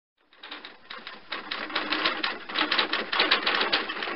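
Typing sound effect: a rapid clatter of typewriter-like key strikes, sparse at first and quickening after about a second.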